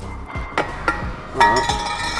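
Metal gym equipment clinking: a few sharp clicks, then a clang that rings on.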